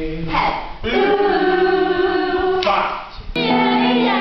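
A group of voices singing together in chorus, holding long notes. The sound dips briefly about three seconds in, then a new chord begins.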